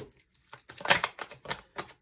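A deck of tarot cards being shuffled by hand: a run of quick flicks and snaps of cards, the sharpest about a second in.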